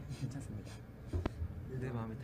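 Quiet male speech in Korean, with a single sharp click a little past a second in.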